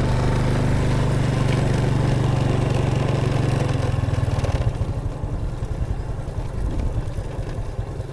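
Small motorcycle engine running steadily while riding, then dropping to a slower, pulsing beat about halfway through.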